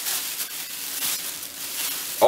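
Thin plastic bag crinkling and rustling irregularly as gloved hands dig through it and lift out Christmas ornaments.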